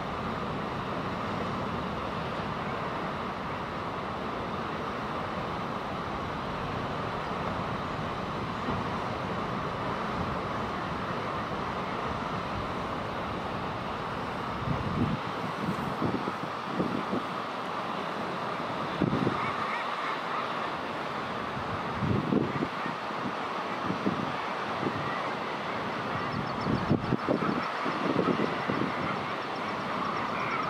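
Common guillemots calling at a crowded cliff-ledge colony over a steady background of noise. From about halfway through, louder low calls come in short bursts every second or two.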